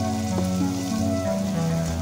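Onion, garlic and ají panca paste sizzling gently as it fries in oil over low heat, under soft background music with long held notes.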